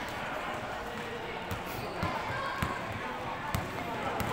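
Basketball being dribbled on a hard indoor court, a few separate thuds in the second half, with voices in the background.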